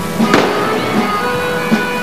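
Music with a steady beat, cut across about a third of a second in by a single sharp pyrotechnic bang that rings on briefly.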